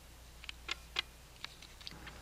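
A handful of faint, irregular light clicks: a glass nail polish bottle being handled and set down.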